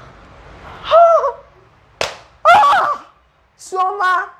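A woman's loud, shocked wordless exclamations, with a single sharp hand slap about two seconds in.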